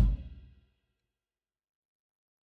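The last hit of a Ludwig drum kit played along with a backing track rings out and fades away within about half a second. Then there is dead silence.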